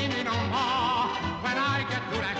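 Early-1920s recording of a popular song: a band plays a bouncing two-beat accompaniment under a wavering, vibrato melody line, with the muffled, narrow sound of an old record.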